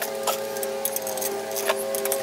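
A few sharp metallic clicks from hand tools working on a pressure washer's metal frame and handle bracket, over a steady hum.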